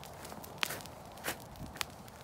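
Footsteps: three distinct steps roughly half a second apart over a faint steady hiss.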